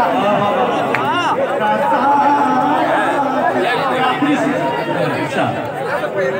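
Overlapping human voices throughout, several people talking or calling out at once, with no other sound standing out.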